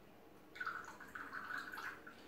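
Lemon syrup poured in a thin trickle from a small bottle into a shot glass, starting about half a second in and running for about a second and a half.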